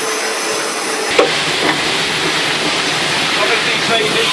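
Steady hiss of steam in a steam locomotive's cab, growing louder about a second in with a short knock as it does, just before the train moves off.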